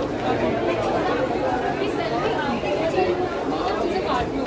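Chatter of a crowd: many people talking at once, with overlapping voices and no single speaker standing out.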